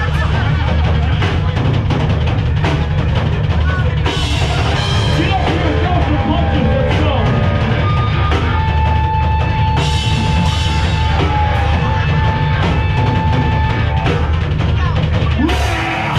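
Hardcore punk band playing live: distorted electric guitar and bass over pounding drums with a driving kick drum. About halfway through, a single high note is held steadily for several seconds, and the band breaks off briefly just before the end.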